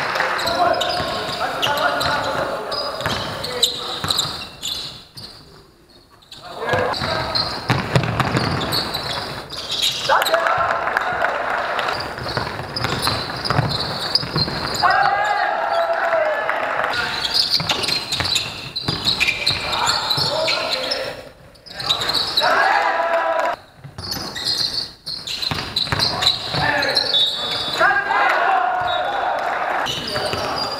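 Basketball game in a large echoing sports hall: a ball dribbling and bouncing on the court, with players' voices calling out.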